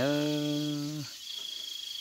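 Crickets trilling: a steady high-pitched trill. During the first second a person's voice holds one drawn-out vowel.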